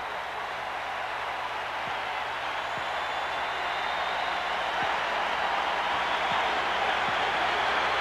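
Applause from a large stadium audience, a dense even clapping that grows slowly louder.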